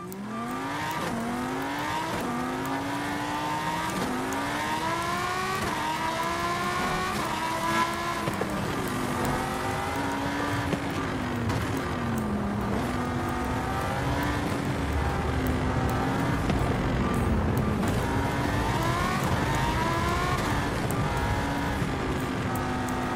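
Victrip Janus e-bike's electric motor whining under pedal assist, its pitch rising and falling again and again as the bike speeds up and eases off, with a low wind rumble on the microphone.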